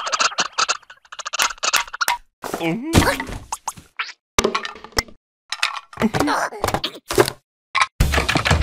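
Cartoon character voices making wordless babbling and exclamations, broken up by short sharp thunks and knocks of comic sound effects, with brief silent gaps between them.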